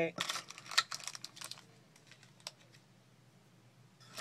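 Small clear plastic packs of earrings on card backings being handled and set down on a countertop: a quick run of light clicks and crinkles in the first second and a half, then a few faint taps.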